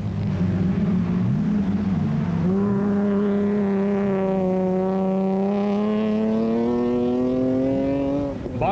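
Off-road race buggy engines running hard as the buggies pass; one engine note is held and climbs slowly in pitch, and a second engine rises to meet it about two seconds in.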